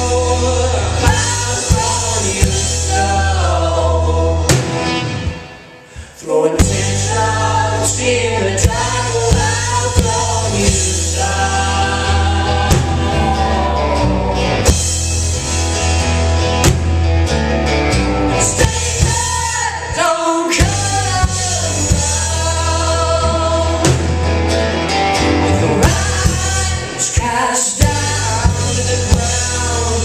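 Live indie-folk rock band playing: singing over acoustic and electric guitars, keyboard and drums, with a heavy booming low end, recorded from the audience on a cheap camera. About five seconds in the band stops dead for a moment, then comes straight back in.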